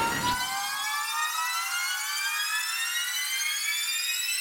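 Slow synth riser in a trap beat: one tone with many overtones climbing steadily in pitch, with no drums or bass beneath it, building toward the next section of the track.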